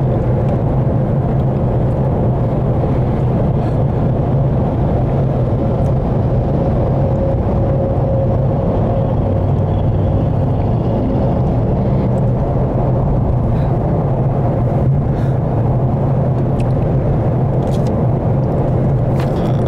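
Car cabin noise at highway speed: a steady low drone of engine and tyres on the road.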